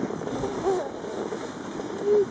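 Steady rushing outdoor background noise, with a faint voice about half a second in.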